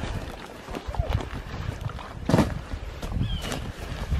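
Irregular footsteps on a dirt trail covered in dry leaves, with brief voices in between.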